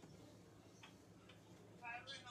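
Near silence: a low steady room hum with two faint clicks a little under a second apart, from a spatula scraping brownie batter out of a metal mixing bowl. A voice starts just at the end.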